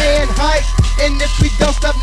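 Memphis underground rap song: a hip hop beat with deep bass and kick drums a little under two a second, under a rapped vocal.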